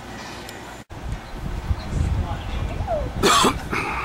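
A person's cough, one short loud burst about three seconds in, over a low irregular rumble on the microphone; the sound drops out for a moment a little under a second in.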